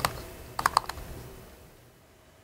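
Keys clicking on a computer keyboard as a short terminal command is typed: a couple of keystrokes at the start, then a quick run of about four more a little after half a second in.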